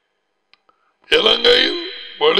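A pause of about a second, broken only by two faint clicks, then a man's voice speaking a short phrase, each utterance trailing off in a long echo.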